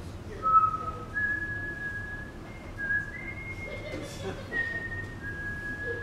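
A person whistling a slow tune: a string of clear held notes, one after another, the first sliding down into pitch.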